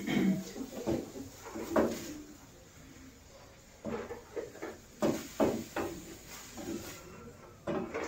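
Wooden spoon stirring and scraping diced meat in a stainless-steel pan, with a string of irregular knocks against the pan's side, busiest in the second half.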